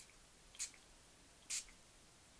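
Pump spray bottle of black ink mist giving two short spritzes about a second apart.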